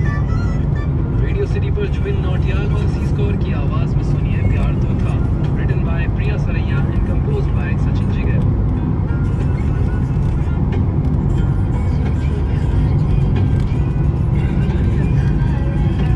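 Steady road and engine noise inside a moving car's cabin, with music and a voice laid over it.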